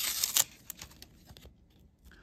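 Trading cards in clear plastic sleeves being handled: crinkly plastic rustling with a few sharp clicks in the first half second, then fading to near quiet.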